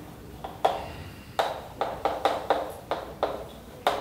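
Chalk tapping and scraping on a blackboard as a line of words is written: a quick, uneven run of sharp taps, about a dozen, coming thicker after the first second.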